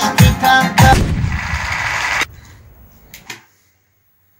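Electronic arranger keyboard played live with a rhythm accompaniment, ending about a second in on a long noisy crash-like wash that cuts off abruptly a second later. Then a couple of faint clicks.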